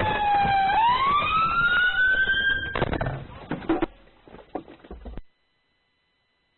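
Police car siren wailing in one slow fall and rise of pitch, cutting off suddenly about three seconds in. A few knocks follow before all sound stops about five seconds in.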